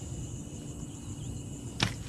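Steady high-pitched shrill of night insects over a low rumble, with a single sharp snap or slap near the end.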